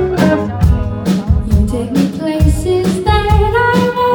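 Live band music: a woman singing over electric guitar with a steady beat, her voice most prominent in the second half.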